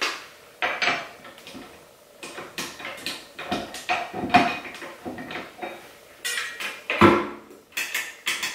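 Metal clinks and knocks of a dough hook being fitted onto a KitchenAid stand mixer and its stainless steel bowl, in irregular handling sounds with a heavier clunk about seven seconds in.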